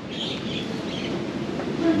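A steady low background rumble with no clear events in it.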